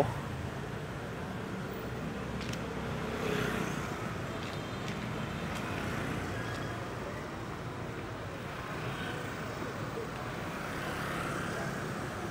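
Motorbike and scooter traffic on a city street: a steady hum of engines and tyres that swells slightly about three seconds in.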